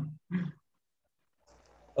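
A man laughing briefly: two short bursts of laughter in the first half second.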